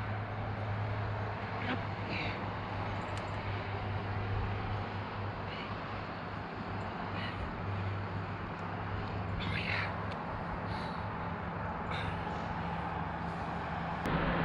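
Steady low hum of distant highway traffic, with a few short high calls now and then.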